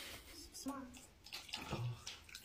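A ladle of broth being poured back into a metal serving tray: soft liquid splashing and trickling, with a couple of brief murmured voice sounds.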